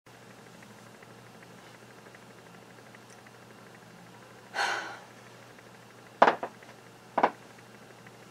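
A woman's breathy exhale, then two short, sharp coughs about a second apart, the loudest sounds here, from a dry throat that keeps catching when she tries to sing.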